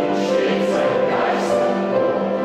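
Mixed amateur choir singing a classical choral work in sustained, held notes that change every half second or so.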